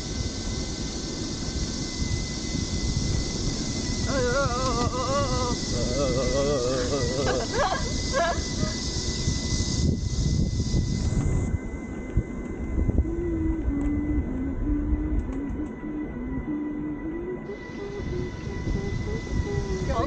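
Steady wind and road rumble as a pedal surrey bike rolls along the road. A burst of laughter comes a few seconds in, and later someone hums a short tune in a few held notes.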